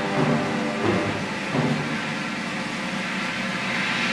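A trombone choir playing full, low brass chords, with several fresh attacks in the first two seconds, then a softer held chord.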